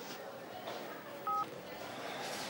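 A mobile phone gives one short two-tone keypad beep about a second and a half in.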